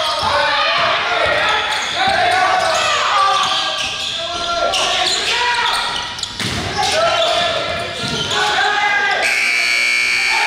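Basketball game sounds in a hard-walled gym: voices of players and spectators calling out indistinctly, and the basketball bouncing on the hardwood floor. About nine seconds in, a steady high-pitched tone starts and holds.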